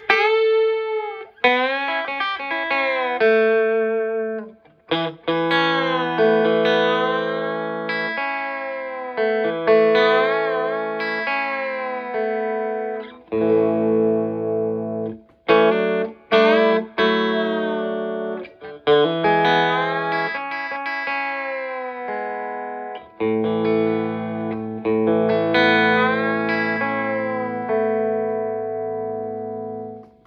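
Electric guitar, a Telecaster fitted with a Glaser string bender, played through a 1965 Fender Deluxe Reverb amp with its reverb: a passage of picked notes and chords in which bent notes rise and fall in pitch. The playing stops briefly a few times, about four seconds in and again around the middle.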